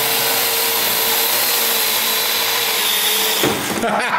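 Parrot AR Drone quadcopter's four electric rotors whirring steadily with a faint hum as it hovers low and sets down to land. The whirr drops away about three and a half seconds in as it touches down.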